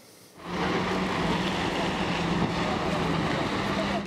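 A motorboat's engine running steadily with rushing water and wind noise, coming in about half a second in.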